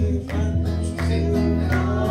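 Guitar-led hymn accompaniment: strummed chords over a steady bass line, with little singing between sung lines.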